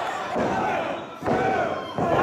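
Wrestling crowd shouting a pinfall count in unison with the referee, two loud shouts about a second apart as the count reaches two.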